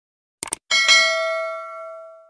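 Subscribe-button animation sound effect: a quick double mouse click, then a bright bell ding that rings and fades away over about a second and a half.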